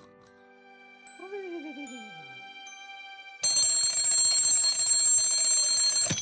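Cartoon twin-bell alarm clock ringing: a loud, shrill bell ring that starts suddenly about three and a half seconds in and holds steady until it is cut off at the end, as a hand slaps the clock. Before it, soft held music notes and a wobbling sound effect that slides down in pitch.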